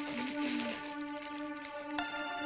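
Crinkling and rustling of a small plastic cellophane treat bag as it is handled and untied, over steady background music.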